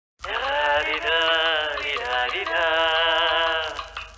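Intro jingle: music led by a sung voice in phrases of about a second each, starting just after the beginning and dropping out briefly near the end.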